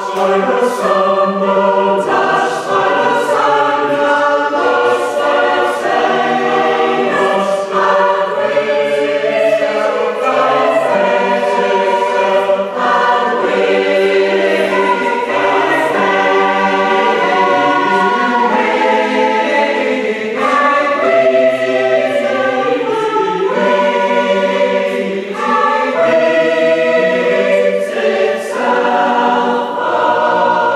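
Mixed choir singing an 18th-century American hymn tune in parts, West Gallery style, with a cello accompanying. The choir comes in sharply at the start after a brief pause, then sings on in sustained chords.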